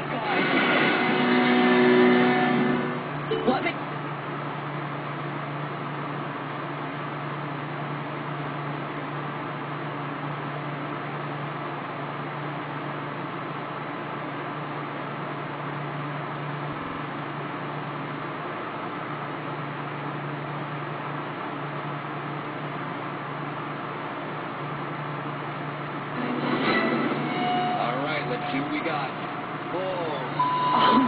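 Boat engine running steadily, heard off a television speaker through a phone's microphone, with a steady low hum. It is louder for the first few seconds and again near the end.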